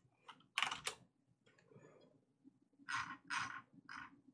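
Computer keyboard being typed on: a few separate keystrokes in the first second, a pause, then a short run of keystrokes from about three seconds in.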